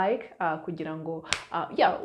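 A woman talking, with one sharp click a little past halfway.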